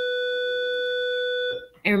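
A steady electronic tone, one held pitch with overtones, that cuts off suddenly about a second and a half in.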